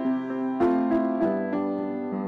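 Grand piano playing slow chords, a few struck in the first second and a half, each left to ring.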